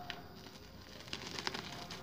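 Scissors cutting through a plastic-wrapped parcel: faint snipping and crinkling of the black plastic wrap, with a few small clicks in the second half.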